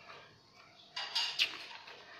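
Faint room tone, then, about a second in, a few short rustles and crinkles of a sheet of drawing paper being handled.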